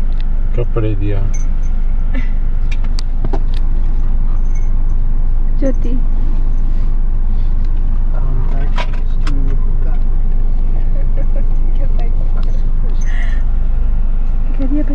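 Steady low rumble inside a car's cabin, with scattered light clicks and rattles.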